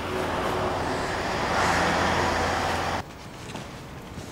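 Road traffic noise: a steady rush of passing vehicles that swells as one passes about two seconds in, then stops abruptly, leaving a much quieter street background.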